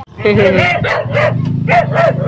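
A dog barking repeatedly in loud, short barks, over a steady low hum.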